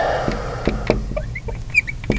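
Marker squeaking and tapping on the glass of a lightboard as a word is written: short chirping squeaks and light taps, bunched near the end, over a steady low hum.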